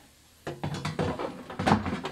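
Air fryer basket with its wire rack being handled and slid back into the fryer: a quick run of plastic-and-metal clicks and knocks that starts about half a second in and is loudest near the end.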